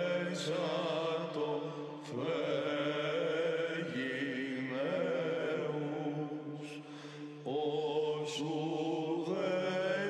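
Monastic choir chanting a Byzantine Orthodox hymn: a steady low drone (the ison) held beneath a winding, ornamented melody line, with new phrases entering about two, four and seven and a half seconds in.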